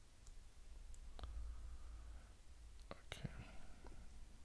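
Quiet muttering under the breath, with a few sharp computer key clicks about a second in and again near the end.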